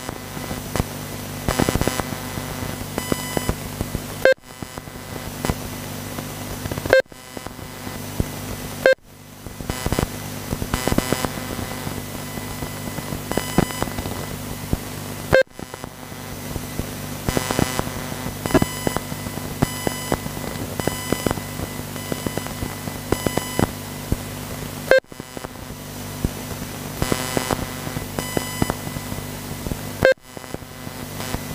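Ambient sound at a radio-controlled car race track: a steady low electrical hum with frequent short beeps and clicks. The sound drops out briefly about five times.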